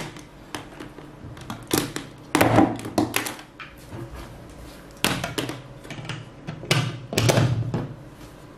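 Cables and a small plastic satellite speaker being handled and set down on a tabletop, giving clusters of clicks, knocks and rustling: about two seconds in, again around five seconds, and again near seven seconds.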